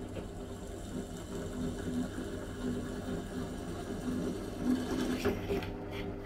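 Restored 8-inch bench drill press running with a steady motor hum while its bit cuts into a metal strip, with the cutting noise growing louder for a moment near the end.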